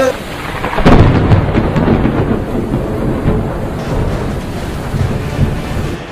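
A loud roll of thunder that breaks about a second in and keeps rumbling, its weight in the low end.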